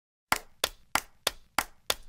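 Sharp percussive hits in a steady beat, six strikes about three a second, counting in the pop song before the vocal enters.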